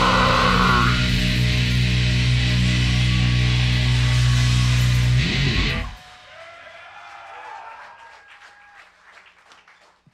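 Live heavy band ending a song on a held, distorted guitar and bass chord under a wash of cymbals, cut off sharply about six seconds in. Faint crowd noise follows and fades.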